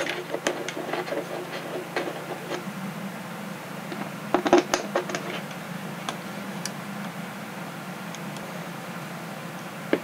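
Small clicks and taps of screws being set by hand into a metal landing-gear mounting plate on a wooden wing, with a cluster of sharper clicks about four and a half seconds in. A steady low hum runs underneath.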